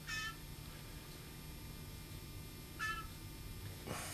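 Young blue jay giving two short, high calls, one right at the start and one about three seconds in, each dipping slightly in pitch.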